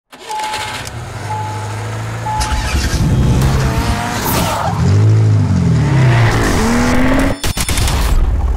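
Produced car-themed intro sound effects: three short beeps about a second apart, then a car engine sweeping up and down in pitch with tire squeal, rising at the end before cutting off sharply into a brief crackle.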